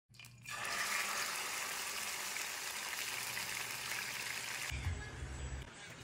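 Meat frying in a pan of hot oil: a steady sizzle that cuts off sharply about three-quarters of the way in, leaving a low hum.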